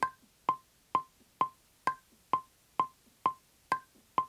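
DAW metronome clicking steadily at about two clicks a second, with a higher-pitched click on every fourth beat marking the start of each bar.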